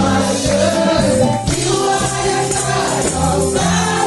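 Gospel praise-and-worship song: women's voices singing over backing music with steady bass notes and a regular drum beat, with tambourines shaken along.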